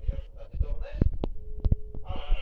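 A run of soft low thumps with a few sharp clicks, two of them close together in the second half, and a brief steady hum near the end.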